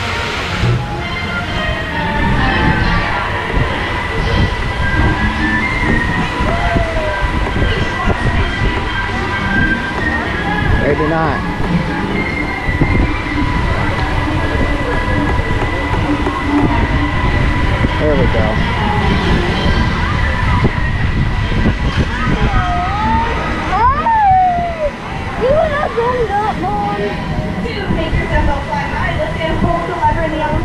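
Rumbling wind on the microphone of a rider aboard the circling Dumbo the Flying Elephant ride, under a steady high hum, with scattered voices of other riders, most of them near the end.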